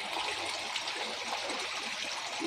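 Water pouring steadily from a pipe into a partly filled plastic tub, splashing into the water already in it as the tub fills.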